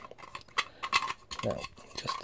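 Light, scattered clicks and taps of a Raspberry Pi Zero circuit board being fiddled into place in a small 3D-printed plastic case.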